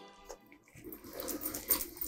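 Soft, wet chewing and mouth noises of a man eating a handful of rice, picked up close by a clip-on microphone. They start about a second in.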